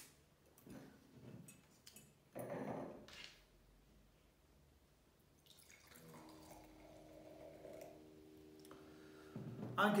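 Sparkling rosé wine poured from the bottle into a stemmed wine glass, a steady fizzing pour of about four seconds in the second half that stops abruptly. A short burst of noise comes about two and a half seconds in, as the bottle's stopper is handled.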